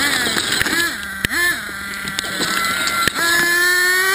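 Nitro RC buggy's small two-stroke .21 engine revving: its pitch swings up and down, then holds high and steady for about a second and a half near the end as it runs at speed.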